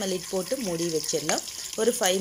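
A woman talking in Tamil, over the faint steady sizzle of marinated chicken pieces frying in oil in a flat pan.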